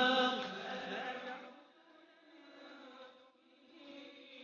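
A man reciting the Quran in Arabic in a melodic, chanted style. A loud held phrase opens and fades about a second and a half in, and the recitation goes on more softly before swelling again near the end.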